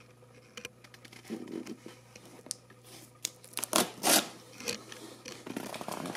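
Clear plastic film wrapped around a cardboard box being picked at and torn by hand: scattered scratches and crinkles, with a few louder rips about four seconds in.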